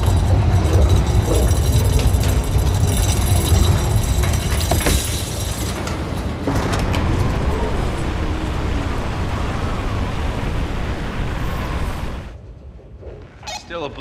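Blizzard wind: a loud, dense rush with a deep rumble underneath. It drops away abruptly about twelve seconds in to a much quieter indoor hush.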